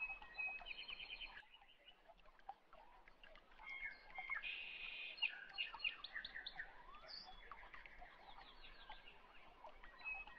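Faint birdsong: many short chirps and quick trills, some repeated in runs.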